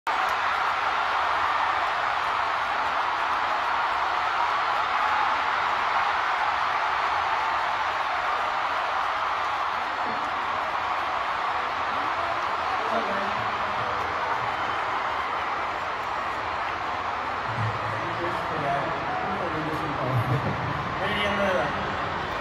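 Large arena crowd cheering and screaming, a steady roar that eases a little after the first half. From about halfway in, a man's amplified voice and some music over the PA come in under the crowd noise.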